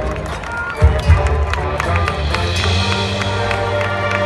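Marching band playing on the field: sustained wind chords over drums and percussion, with a heavy low hit about a second in.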